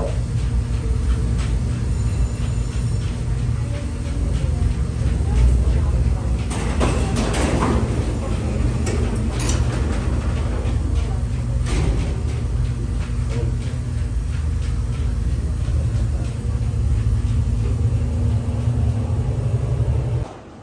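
Steady low rumble of a moving museum elevator-ride car carrying visitors between staged mill floors, with a few knocks and clatters over it in the middle.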